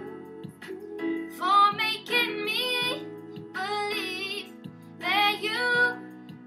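A young girl singing a pop ballad in three sung phrases, over a backing track of steady low instrumental notes.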